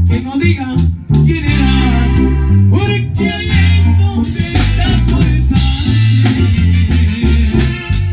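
Live band music: heavy bass notes, drum kit and keyboard playing, with a male voice singing in the first few seconds and cymbals ringing through the second half.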